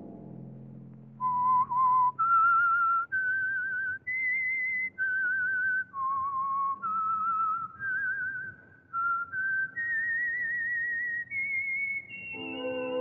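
A lone human whistler carries a slow melody of held notes with a wavering vibrato: the radio drama's signature whistled theme. It starts about a second in and climbs higher toward the end. The ringing tail of a timpani stroke fades away in the first moments.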